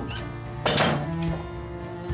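A door being shut with a single thunk about two-thirds of a second in, over background music of steady held notes.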